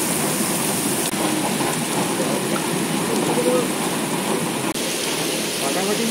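Heavy rain falling steadily on wet pavement, a constant hiss of drops, with faint voices underneath.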